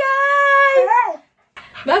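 Labrador dog howling: one long howl held at one pitch that wavers and drops off at its end, then after a brief pause a second howl begins near the end.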